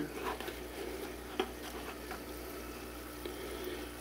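Faint bubbling and trickling water in a deep water culture hydroponic tub aerated by a fish-tank air pump, as a net pot of clay pellets is lifted out of it, with one light click a little over a second in.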